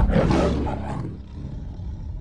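A big cat's roar sound effect, loud at first and fading away over the next second or two.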